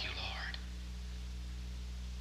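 A brief whispered voice in the first half second, then a steady low electrical hum with hiss from the old recording, which runs on alone.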